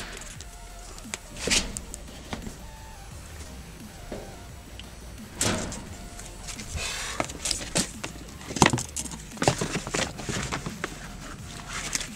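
Scattered light knocks and rustles of handling as a PVC trim strip is held and moved against a wooden garage-door jamb, over faint background music.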